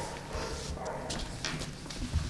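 Handling noise from a desk microphone on a small tripod stand as it is lifted and set down on a table: a few light knocks and rubbing.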